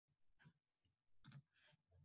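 Near silence: room tone with two faint short clicks, a tiny one about half a second in and a slightly stronger one just past a second in.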